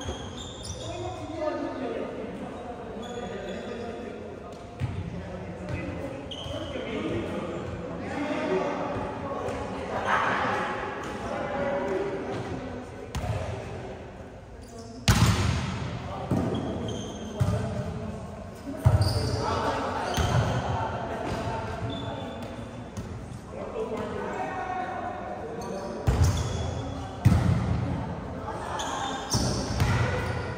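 A volleyball being struck during rallies in an echoing gym, with sharp slaps of the ball, the loudest about halfway through and near the end. Players' voices call out between the hits.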